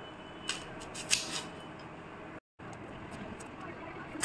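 Kitchen knife slicing through a red onion on a stone countertop: three crisp cuts in the first second and a half, the sharpest about a second in. The sound drops out completely for a moment just after halfway.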